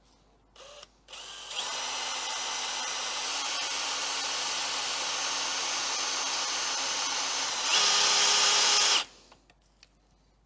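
Handheld electric drill drilling a hole for a new turbo oil return: two brief blips of the trigger, then running steadily for about six seconds, getting louder and faster near the end before stopping suddenly.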